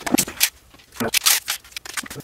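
PPS gas shell-ejecting pump-action shotgun replica being worked by hand, with two quick clusters of sharp clicks and rattles, one at the start and one about a second in. The action is sticking and the shell is not loading smoothly.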